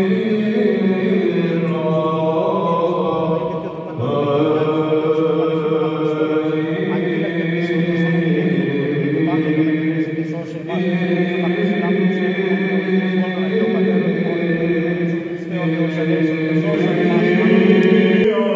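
Orthodox Byzantine chant sung by men's voices in long, slowly moving held phrases, with short breaks between phrases about four, ten and fifteen seconds in.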